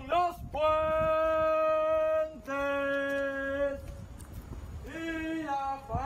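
A man's voice calling out long, drawn-out chanted cries, the ceremonial call for silence before the nine o'clock cannon is fired: a short cry, then two long held notes, the first nearly two seconds long, then a shorter call near the end.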